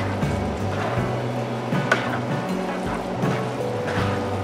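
Background music with a low bass line stepping between notes. Underneath, faintly, a spoon stirring wet cornbread dressing and shredded chicken in a plastic bowl.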